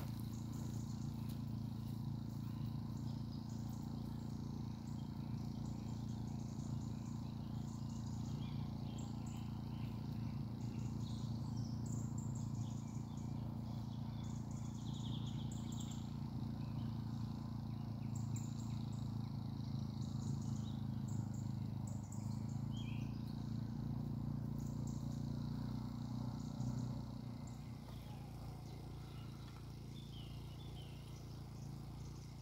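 Portable generator running with a steady low hum, easing off a little near the end. Small birds chirp and call intermittently over it.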